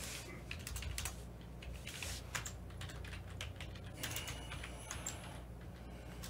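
Typing on a computer keyboard: a run of quick, uneven key clicks.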